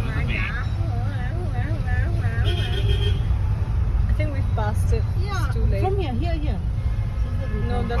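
A bus's musical horn playing a warbling, tune-like run of changing tones over a low traffic rumble.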